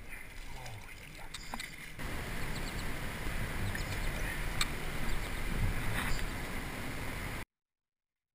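Water splashing and dripping as a smallmouth bass is scooped up in a wooden-framed landing net and lifted out, with a few sharp clicks from handling the fish and tackle. The sound cuts out abruptly near the end.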